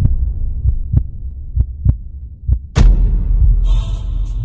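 Trailer sound design: a low drone under a heartbeat-like double pulse, lub-dub about once a second, then a loud impact hit near three seconds in. Sustained layered tones come in near the end.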